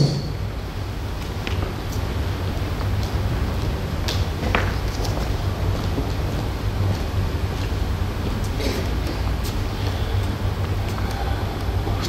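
Steady low hum of a large hall's sound system and room, with a few faint clicks and knocks.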